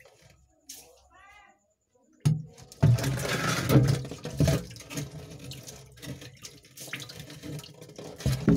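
Water splashing and sloshing in uneven bursts, starting suddenly about two seconds in. Before it, a short warbling call is heard about a second in.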